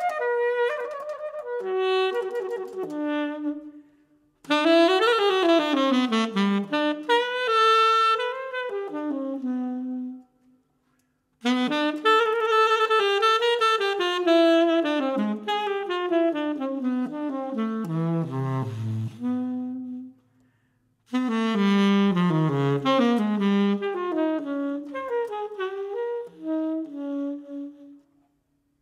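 Unaccompanied saxophone playing jazz phrases, quick runs sweeping up and down and dipping to low notes, with pauses of about a second between phrases.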